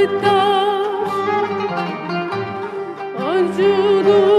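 Turkish classical ensemble of kanun, clarinet and ud performing a song in makam Nihavent, with plucked notes under sustained melodic lines and a rising glide about three seconds in.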